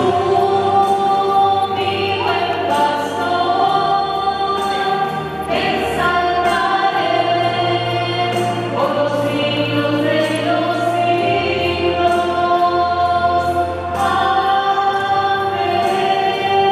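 Slow devotional song: choir voices singing long held notes over sustained chords, with the bass note shifting every few seconds.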